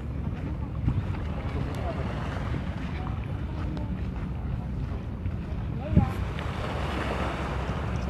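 Wind rumbling on the microphone under a faint murmur of distant crowd voices, with a single sharp thump about six seconds in.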